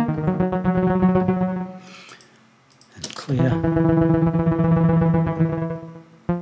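Sustained synthesizer notes run through a granular delay plugin, the grains chopping the tone into a fast, even flutter. The note steps down in pitch just at the start, fades away after about a second and a half, a short noisy swish follows, and a lower note comes back about three seconds in.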